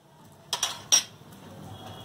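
Two clinks of metal kitchenware, the first about half a second in and a sharper one near the one-second mark.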